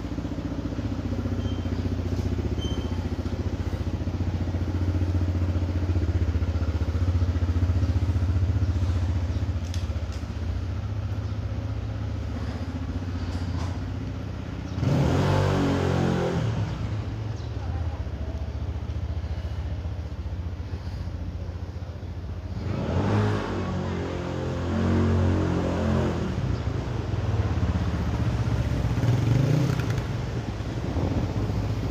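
Car engine running slowly with a steady low hum as it creeps along, then louder motor-vehicle noise swelling and fading twice, about halfway through and again a few seconds later.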